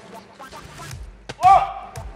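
A ball of yeast dough dropped onto a floured wooden board, landing with a single thud about one and a half seconds in, with a short voiced exclamation at the same moment.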